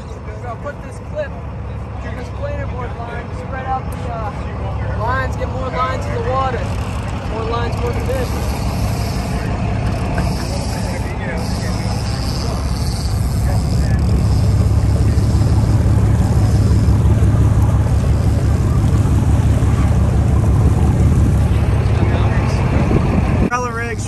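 A boat's engine drones steadily under the rush of water and wind, growing louder about halfway through. Faint, unclear voices can be heard in the first half.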